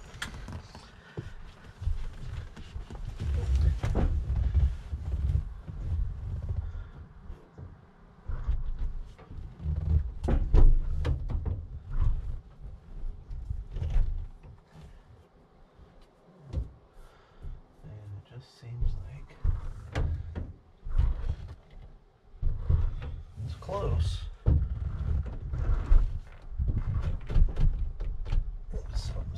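Knocks and thumps of a person climbing about inside the rear of a VW Vanagon and handling the panels by its sliding door, over a low rumble that comes and goes.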